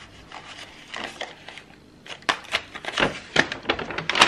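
Hands rummaging in a brown paper bag: paper rustling and crinkling as small items are moved about, with a run of short taps and clicks that gets busier about halfway through.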